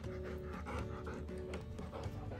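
Bernese mountain dog panting, a few breaths a second, over soft background music.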